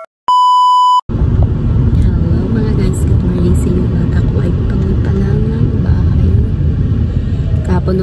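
A steady electronic beep tone lasting under a second near the start. Then a woman talking over a steady low rumble inside a car's cabin.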